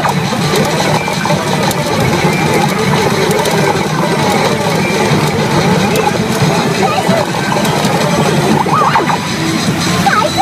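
CRA野生の王国SUN N-K pachinko machine playing its electronic music and effects over a dense, steady background din, with a character's voice breaking in near the end.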